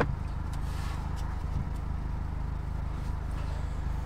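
Car engine idling steadily, heard from inside the cabin, with a few faint clicks.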